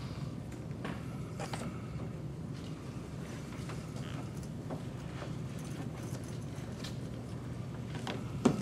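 Room noise: a steady low hum under scattered small knocks, taps and shuffles, as people move about and handle equipment.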